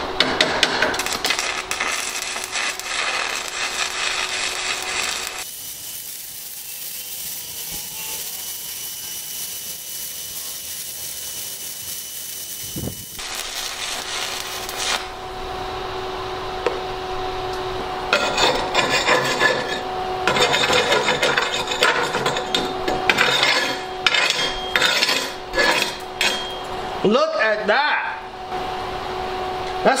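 Stick welding arc crackling steadily as a 1/8-inch 7018 electrode burns down, run from an Everlast iMig 200 inverter welder, with a steady hum underneath. The crackle changes character several times through the stretch.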